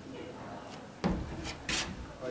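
Marker pen writing on a whiteboard: a few short rubbing strokes, one about a second in and more near the end.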